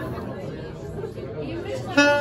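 Audience members talking and chattering at their tables while the saxophone rests between phrases.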